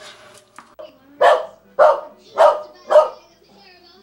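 Small dog barking four times, the barks coming about half a second apart and starting about a second in.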